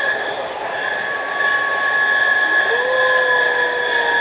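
Running noise of a moving passenger train heard inside the carriage: steady rolling noise with a constant high whine. Past the middle, a held tone rises in and stays steady to the end.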